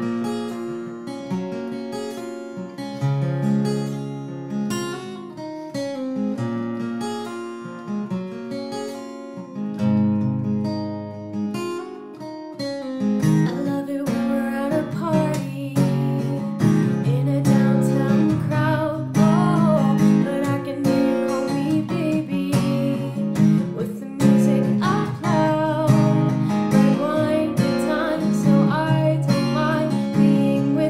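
Acoustic guitar playing a song's intro, turning to fuller strumming about halfway through, with a singing voice coming in over it.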